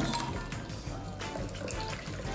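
A shaken cocktail being poured in a thin stream from a metal cocktail shaker into a stemmed glass, the liquid splashing as it fills the glass. Music plays underneath.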